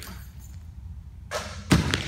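A short hiss and then a basketball bouncing once, sharply, on a hardwood gym floor near the end, after a shot that dropped clean through the net.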